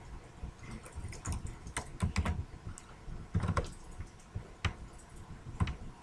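Computer keyboard typing: irregular, fairly faint key clicks, with a few louder keystrokes about two and three and a half seconds in.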